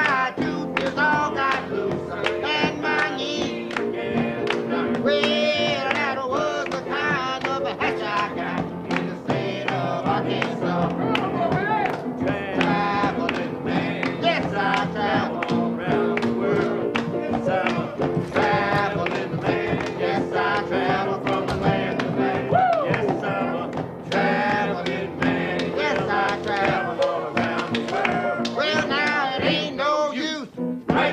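A man singing to a piano, the piano playing steadily throughout.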